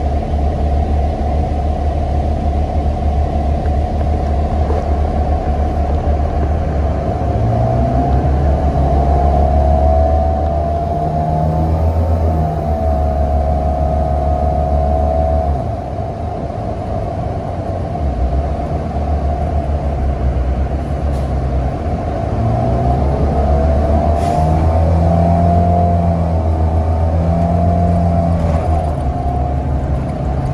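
NABI 42 BRT transit bus heard from inside the passenger cabin while driving: a steady low engine drone with a drivetrain whine that rises in pitch as the bus speeds up, twice, easing off about halfway through.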